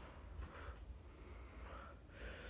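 Faint sound of a two-bladed Bell + Howell socket fanlight coasting down after being switched off, with a low hum underneath.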